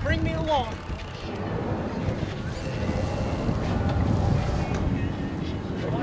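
Steady low rumble of a sportfishing boat's engines under way, mixed with wind and water noise, after a brief shout at the start.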